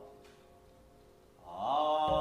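Buddhist sutra chanting with background music: a held chanted note fades away, there is a brief near-silent pause of about a second, then the chanting voice comes back in with an upward slide in pitch.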